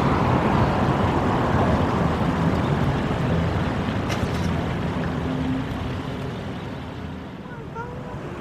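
City street traffic at an intersection: cars passing, a steady rush of engines and tyres that slowly fades near the end.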